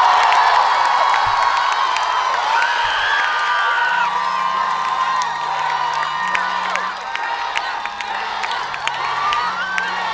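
Large crowd cheering and whooping, many voices shouting at once. About four seconds in, music with a low, stepping bass line starts underneath the cheers.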